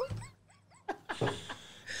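Men's laughter trailing off into faint, high squeaky giggles and breaths, with a sharp click about a second in.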